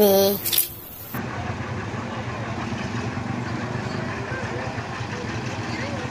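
A heavy tow truck's engine running steadily at low revs, from about a second in, with faint voices in the background.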